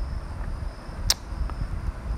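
A single sharp computer mouse click about a second in, followed by a fainter tick, over a steady low hum of background noise.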